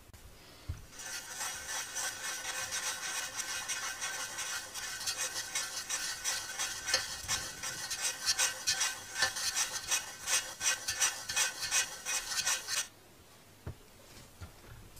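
Scratchy rubbing with quick rasping strokes that grow choppier in the second half. It starts about a second in and cuts off abruptly about a second before the end.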